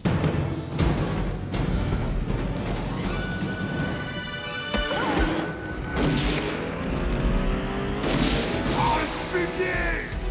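Action-film soundtrack: a dramatic score over booms and crashing impacts.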